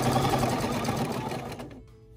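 Domestic Bernina sewing machine free-motion quilting: the needle runs at a fast, steady stitching rate, then slows and stops near the end.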